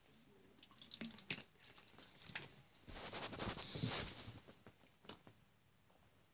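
A man drinking from a bottle: small mouth clicks and swallows, then a louder run of gulps and liquid sounds from about three to four seconds in.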